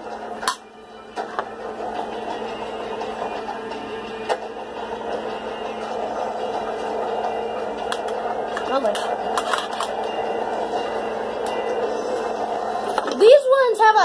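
Muffled background talk and music from another person's gaming session in the room, running steadily, with a few sharp handling clicks scattered through it.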